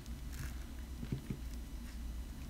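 Faint handling sounds of a small plastic paste jar and its just-removed protective lid, with a couple of soft taps about a second in, over a low steady room hum.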